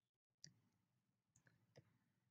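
A few faint computer mouse clicks: one about half a second in, then three close together in the second half.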